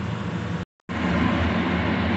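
Steady background hum and rumble with no distinct events, broken by a brief dropout to total silence less than a second in.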